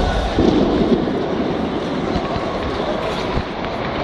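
Steady, noisy sports-hall background through a camcorder microphone, with a low rumble and no clear voices.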